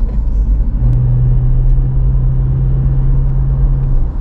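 Car driving, heard from inside the cabin: a steady deep rumble of engine and tyres on the road, with a constant low hum setting in about a second in.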